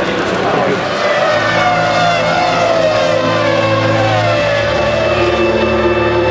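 Formula One V10 race car engines, their pitch falling in several downward sweeps as the cars slow, over a low steady hum.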